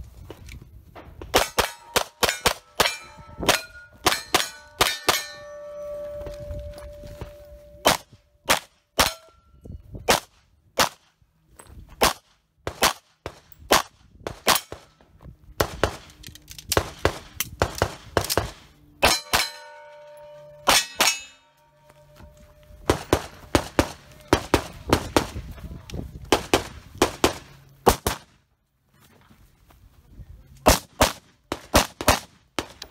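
Rapid strings of pistol shots broken by short pauses. Many are followed by the ringing clang of struck steel targets.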